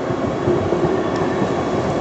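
Street tram rolling in close by on its rails: a steady running noise of wheels and motors that grows a little louder about half a second in.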